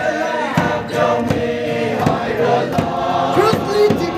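A crowd singing a hymn together, with a steady beat about twice a second.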